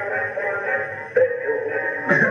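A singing snowman toy playing a Christmas song, heard down a telephone line.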